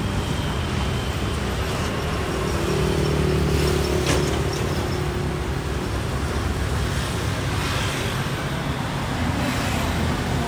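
Road traffic: a steady wash of vehicle engine and tyre noise from the street, with one engine's hum growing louder for a couple of seconds a few seconds in.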